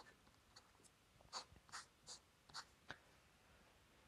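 Faint fountain pen nib scratching across paper in about five short strokes, writing a figure and drawing the lines of a box around it.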